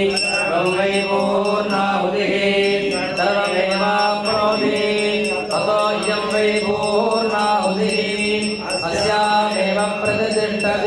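Male voices chanting Sanskrit mantras together over a steady low drone, with a high ringing that repeats quickly throughout.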